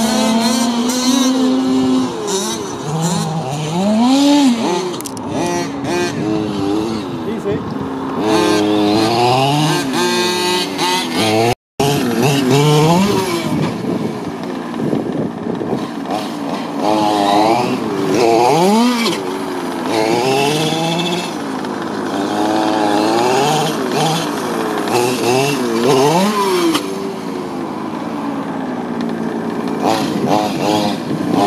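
Small two-stroke petrol engines of King Motor X2 1/5-scale RC trucks revving up and down repeatedly as the trucks are driven hard, often two engines at once. There is a brief dropout near the middle.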